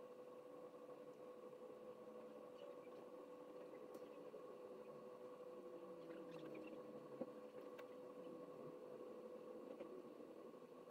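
Near silence: a faint steady hum with a few faint ticks.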